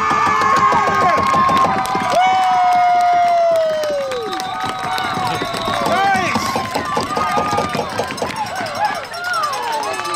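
Sideline spectators at a youth football game yelling and cheering a breakaway touchdown run, several voices overlapping. Long drawn-out shouts are loudest in the first few seconds, then shorter mixed shouts follow.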